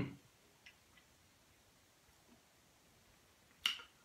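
Mostly near-silent room tone. It opens on the dying tail of a man's appreciative "mm" as he tastes whisky, with a couple of faint mouth clicks, then one sharp lip smack near the end.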